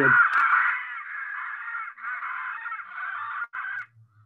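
A parrot screeching: a harsh, raspy call held for several seconds, with short breaks about two seconds in and near the end.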